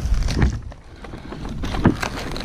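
Dry palm frond bases crackling and scraping against gloves and climbing gear as a climber shifts on the trunk, louder about half a second in and again near the end, over wind rumble on the microphone.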